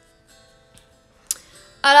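Mostly quiet, with faint steady tones and a single soft click about a second and a half in; near the end a woman's voice starts on a long, drawn-out, slowly falling note.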